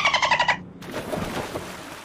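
Cartoon dolphin chatter sound effect: a half-second burst of rapid squeaky clicks at the start, followed by a softer rushing noise that fades away.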